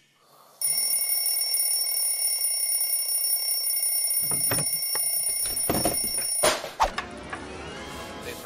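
Alarm clock ringing steadily, starting about half a second in. A few knocks come over it in the last couple of seconds, and it stops suddenly about six and a half seconds in.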